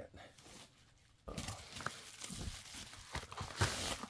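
Plastic packaging crinkling and rustling as items are handled, starting about a second in after a brief lull.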